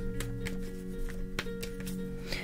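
Soft background music on long held tones, with three light clicks from tarot cards being handled.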